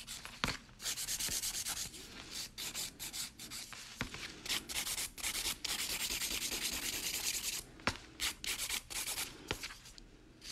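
A nail file rasping over a gel-coated fingernail in quick back-and-forth strokes, shaping the flat nail, with a few short pauses between runs of strokes.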